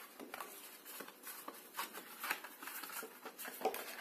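Card stock being handled and pressed into place by hand: soft, irregular rustles and light taps of paper against paper and the cutting mat.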